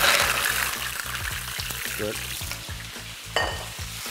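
Mussels dropped into very hot olive oil in a frying pan: a loud sizzle that starts at once and fades gradually over the next few seconds. A single sharp clink sounds about three seconds in.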